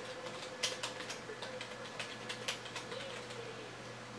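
Typing on a computer keyboard: a quick, irregular run of key clicks as a short line of text is entered.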